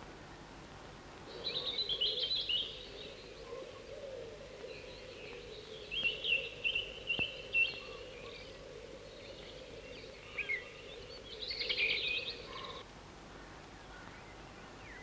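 Chickadee calls: a burst of high chirps early on, then a string of four short, sharp notes around six to eight seconds in, and another burst of chirps near the end.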